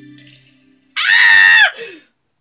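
A woman's loud, high-pitched scream of excitement, lasting under a second and sliding down in pitch as it ends. Faint music fades out just before it.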